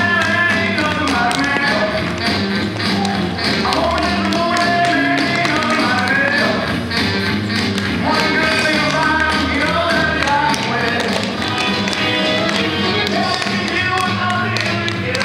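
Upbeat dance music playing, with many quick taps and footfalls of dance shoes on a parquet floor.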